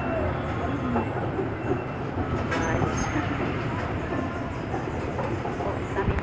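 A carousel turning, with a steady low rumble from its machinery and moving platform.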